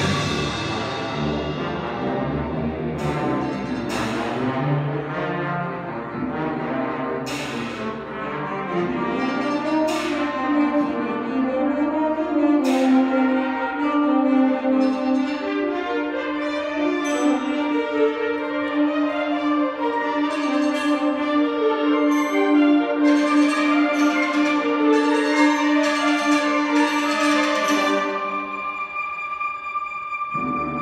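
A youth wind band of woodwinds, brass and percussion playing live in a concert hall. Sharp accented strikes come every few seconds in the first half. From about halfway a long note is held underneath, and a flurry of strikes builds near the end before the sound drops away suddenly.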